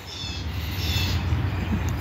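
Birds calling outdoors: two short high-pitched calls, one at the start and one about a second in, over a low steady hum.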